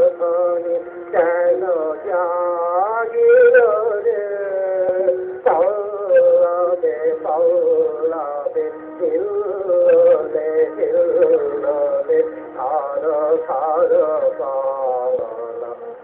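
Music: a voice singing a slow melody with long held and gliding notes over a steady sustained accompaniment.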